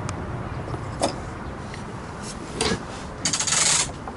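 Rubbing and scraping knocks aboard a small sailboat, the loudest a harsh rasp lasting about half a second near the end, over a steady low rumble of wind.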